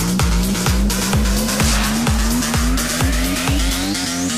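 Electro house music: a four-on-the-floor kick drum about twice a second under a pitched synth bass, with a rising synth sweep climbing steadily through the second half as a build-up. The kick stops near the end.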